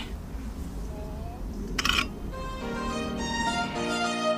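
Outdoor wind rumble on the microphone with a short rustling knock just before halfway, then background music led by violin starts and carries on.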